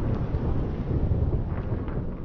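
Sound effect of an animated channel-logo intro: a deep, noisy rumble with hiss above it, easing off slightly.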